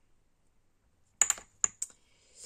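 A few sharp plastic clicks and knocks, hand-handled acrylic paint jars being set down and the next one picked up, coming in a quick cluster a little past halfway.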